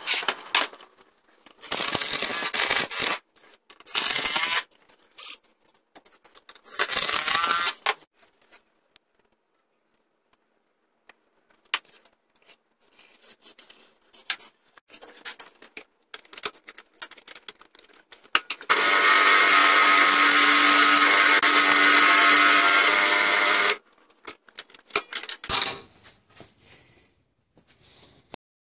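Power tools running in three short bursts, then one steady run of about five seconds with a buzzing, pitched motor tone that starts and stops abruptly; clicks and knocks of handling and workpieces fall between.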